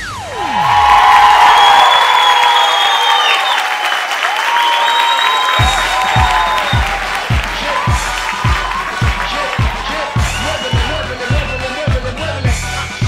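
A steep falling sweep cuts off the music, and a theatre audience cheers, screams and applauds loudly. About five and a half seconds in, a new dance track with a steady kick-drum beat starts under the cheering.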